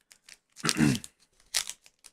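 Plastic foil wrapper of a baseball card pack crinkling and tearing as it is ripped open by hand, in two short bursts.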